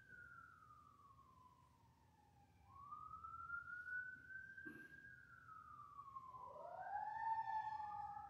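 Faint wailing emergency-vehicle siren from first responders heading to a call. Its pitch slides slowly down, back up and down again over a few seconds each time. Near the end a second wailing tone rises in and overlaps it.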